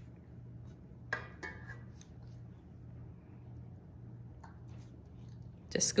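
Metal batter scoop working in a stainless steel mixing bowl of cupcake batter: a brief scrape and clink with a little ringing about a second in, then a few faint clicks, over a steady low hum.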